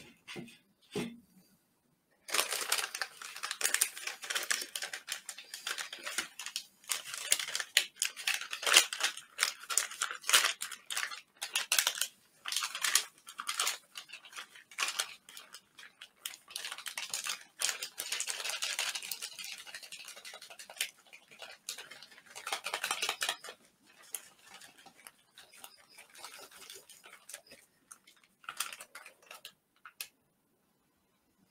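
MRE plastic pouches and packaging crinkling, rustling and being torn open by hand, in quick irregular crackles from about two seconds in, thinning out and growing fainter over the last few seconds.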